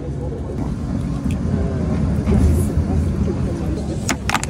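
Street ambience: a steady low rumble of road traffic, with voices talking in the background.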